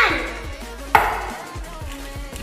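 Two sharp knocks about a second apart, each with a ringing fade, over faint background music.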